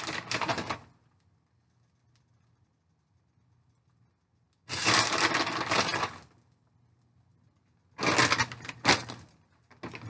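A plastic bag of shredded mozzarella crinkling and rustling as it is shaken out, in three bursts of a second or so each with silence between.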